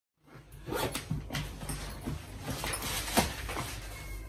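Rustling and irregular clicks and knocks of an overstuffed hard-shell suitcase being pressed down to shut it, starting a moment in, with one sharper click about three seconds in.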